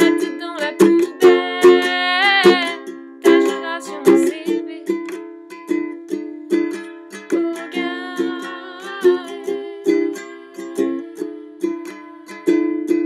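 Acoustic ukulele strummed in a steady rhythm, with a woman singing over it for the first couple of seconds and again for a short line in the middle; in between and at the end the ukulele plays alone.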